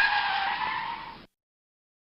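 Editor-added screech sound effect, a hissing noise with a high squeal through it, lasting just over a second and fading out, after which the sound cuts to dead silence.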